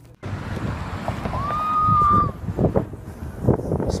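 Low, steady rumble with wind buffeting a handheld phone's microphone, broken by scattered knocks. A single clear high tone rises and holds for about a second near the middle.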